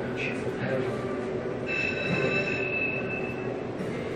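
Electronic sound effects from the Centurion Free Spins slot machine as its reels spin and stop on a small win, including a steady high electronic tone held for about two seconds in the middle.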